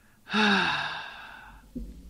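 A woman's long, breathy sigh of exasperation, with her voice in it sliding down in pitch and trailing off over about a second.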